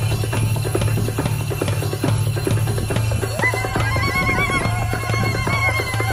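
Live drum-troupe music: hand drums beating a fast rhythm over a steady low drone. About halfway through, a high, warbling trill joins in and carries on to the end.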